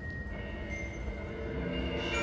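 A school concert band holding soft, sustained chords, with new notes entering and the sound swelling slightly toward the end.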